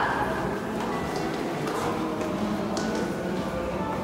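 A few quiet, irregular footsteps on hard stairs and floor, over a faint steady room noise.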